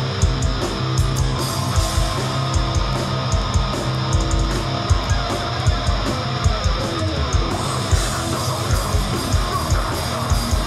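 Hardcore punk band playing loud live: distorted electric guitars and bass over drums hitting at a fast, steady beat, without a break.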